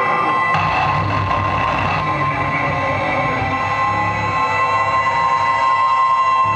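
Live electronic noise music. Two steady piercing tones and a slowly gliding whine ring over dense hiss and a pulsing low rumble, and the noise thickens abruptly about half a second in.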